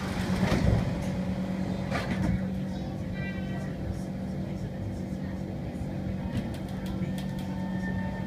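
Interior of a Kawasaki C151 metro train car standing at a station: a steady electrical hum with a few knocks in the first couple of seconds and a brief tone about three seconds in. Near the end the traction motors' whine sets in as the train starts to pull away.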